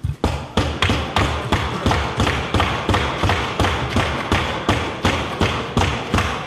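Parliamentarians thumping their desks in approval: a steady run of thuds, about three to four a second.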